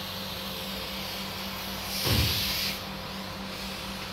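Short burst of compressed-air hiss from a paint spray gun on an air hose, about two seconds in, over a steady low hum in the paint shed.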